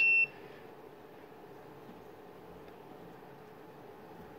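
A single short, high-pitched electronic beep from a Spectra T1000 EFTPOS terminal as it restarts, then only faint room hiss.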